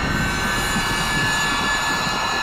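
Dramatic background score: a sustained drone of several held tones over a steady rushing noise, at an even level.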